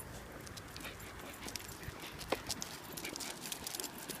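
A Maltese dog gives one short whimper about halfway through, among a run of light, quick clicks.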